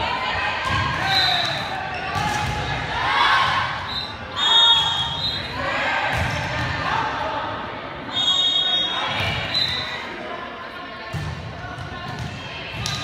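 Volleyball play in a gymnasium: voices of players and spectators echoing in the hall, with several thuds of the ball being struck and short high-pitched squeaks about four and eight seconds in.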